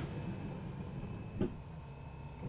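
Wire whisk stirring a thin batter in a glass bowl, quietly, with a single light knock about one and a half seconds in.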